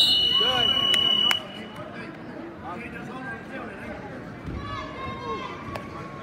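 A loud, high-pitched time signal sounds once for about a second and a half, ending the wrestling period as the clock runs out. Then the gym is full of voices.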